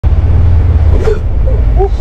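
Polaris Ranger XP 1000 Northstar UTV's twin-cylinder engine running while driving, a steady low rumble heard from inside the enclosed cab.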